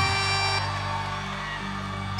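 Live band music with held, sustained chords and no vocal line, growing a little softer in the second half.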